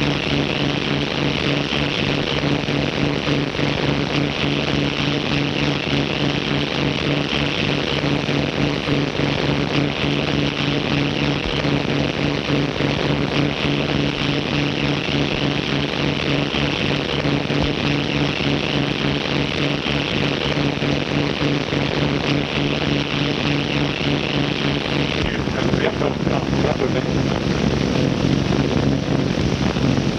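Steady engine drone of the Graf Zeppelin's motors, a constant low hum under heavy hiss from an early optical film soundtrack. The tone changes about 25 seconds in.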